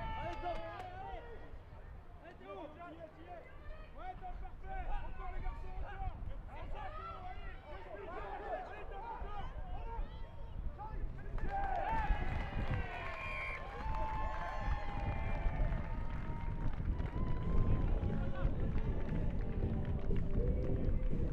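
Pitch-side sound of a rugby sevens match: players and spectators shouting over one another. From about halfway through the shouting grows louder and fuller, rising into cheering as the attack breaks through.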